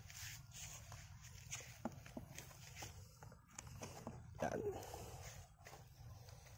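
Faint handling sounds: scattered small clicks and rustles as a kwitis bottle rocket's stick is set into its metal launch tube, over a low rumbling background.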